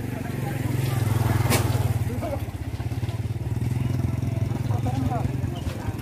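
Single-cylinder diesel engine of a trolley-mounted generator set running steadily, with a fast even low pulse. A single sharp click is heard about a second and a half in.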